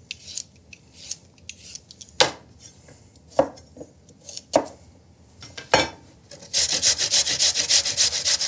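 A knife strikes through carrots onto a wooden cutting board, four sharp chops about a second apart. About six and a half seconds in, a carrot is rubbed quickly up and down a metal box grater, giving a fast, even rasping.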